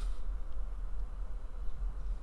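Room tone: a steady low hum with a faint even hiss, and no distinct event.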